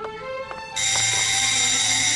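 Electric doorbell ringing with a loud, bright buzz, starting about three-quarters of a second in and lasting about a second and a half, over soft background music.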